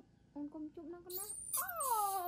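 A newborn baby monkey crying with a loud, shrill call that slides downward in pitch over the second half, after a few short cooing sounds from a woman holding it.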